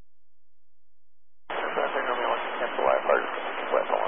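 Air traffic control radio frequency: silent for about a second and a half, then a transmission opens with a voice buried in heavy static, too garbled to make out.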